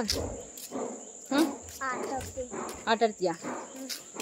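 Insects in the surrounding vegetation giving a steady, unbroken high-pitched drone.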